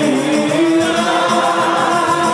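Men's voices singing a qasida together through a microphone system, in long held, melismatic lines in maqam Siqa (Sikah).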